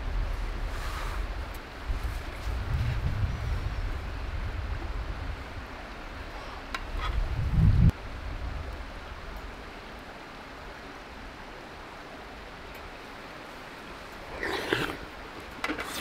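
Gusty low rumble of wind buffeting the microphone, stopping abruptly about eight seconds in; after it a quieter steady outdoor hiss, with a brief patch of small handling clinks and rustles near the end.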